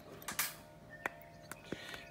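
A few faint, sharp clicks and taps as steel crease nail pullers and a urethane horseshoe with a steel insert are handled and knock together, three separate clicks spread over two seconds.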